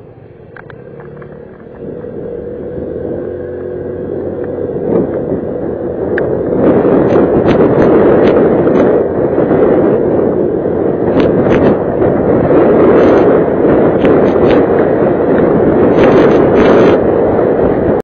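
A motor scooter pulling away and gathering speed, its engine running under the wind noise. The wind rises steadily on the helmet camera's microphone and from about six seconds in becomes loud, rough buffeting with sharp crackles.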